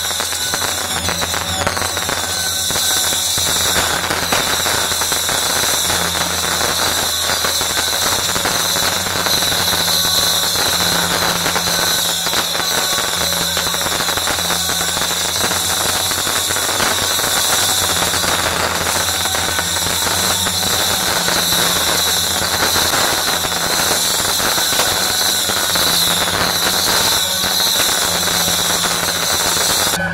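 Firecrackers set off in a row on the road, crackling densely and without a break for the whole stretch.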